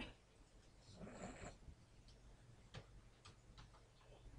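Near silence: a low room hum with a few faint, sharp clicks, most of them in the last second and a half, and a soft rustle about a second in.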